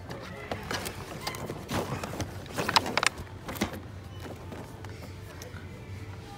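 Plastic blister packs of die-cast toy cars clicking and crinkling as they are handled and shifted on a shelf. The loudest clacks come about two to three and a half seconds in, over music in the background.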